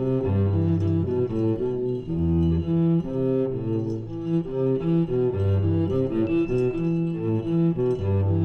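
Cello playing a continuous run of bowed notes that change pitch every fraction of a second, in contemporary chamber music for cello and percussion, with other instruments sounding alongside.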